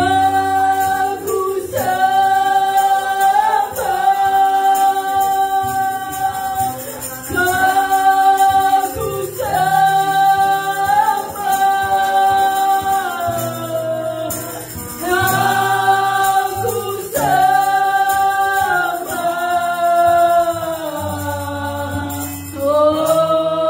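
A woman sings a slow Indonesian worship song into a microphone, holding long notes, with acoustic guitar accompaniment and sustained low notes underneath.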